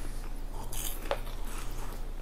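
Steady low electrical hum of the room recording, with a faint short click about a second in.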